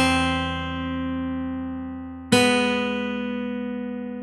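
Guitar playing the tune slowly at half speed: a single note struck at the start and left ringing, then a second note a little over two seconds in, also held and slowly fading.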